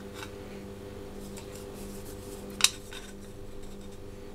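An Arduino Uno circuit board being handled against a clear acrylic case base plate: faint small clicks and taps, with one sharp click about two-thirds of the way through. A steady low hum runs underneath.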